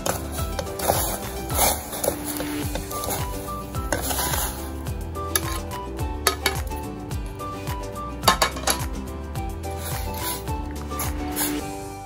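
Clinks and knocks of a plate and a metal spoon against a stainless-steel pot as raw pork spare ribs are slid into boiling water, several sharp strikes spread through, over background music.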